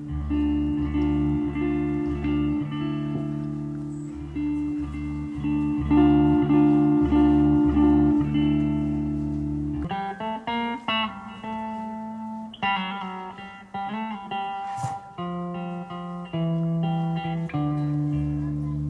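Electric guitar played live through a PA: held low droning chords for about the first ten seconds, then a line of separate picked notes, with the low drone coming back near the end. A single sharp click sounds about fifteen seconds in.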